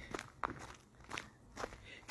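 Footsteps on a gravel path, about four faint steps at an easy walking pace.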